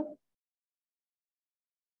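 Silence, complete and without room tone, after the last drawn-out syllable of a woman's voice fades out in the first moment.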